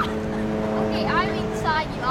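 A steady, even hum with several tones, like a motor running, under short high rising voice sounds about a second in and again near the end.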